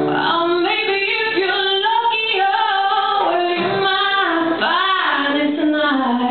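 A woman singing a verse of a slow acoustic song live, her voice the loudest thing, with acoustic guitar accompaniment underneath.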